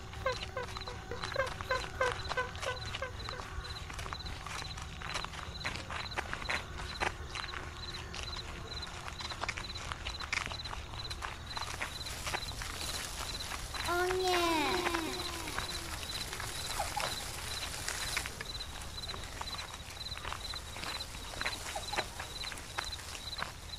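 Animal calls repeated about three times a second, fading out over the first few seconds, then scattered clicks and taps. About fourteen seconds in comes a short run of rising-and-falling calls.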